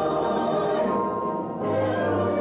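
Church choir of mixed men's and women's voices singing sustained chords. The sound thins briefly about three-quarters of the way through, then a new chord comes in with a strong low note underneath.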